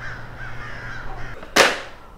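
Birds calling outdoors in short wavering notes. About a second and a half in comes a short, loud rush of noise: a manila envelope tossed down onto a wooden coffee table.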